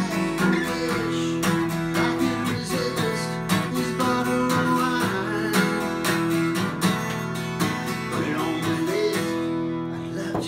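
Takamine twelve-string acoustic guitar strummed in a steady rhythm, chords ringing between strokes.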